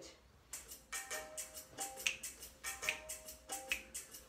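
Drum backing track starting about half a second in: a steady beat of drum hits with short pitched notes over it.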